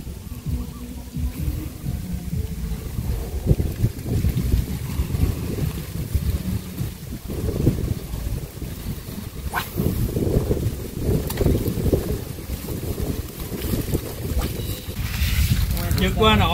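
Wind buffeting the microphone: an uneven low rumble that swells and fades throughout.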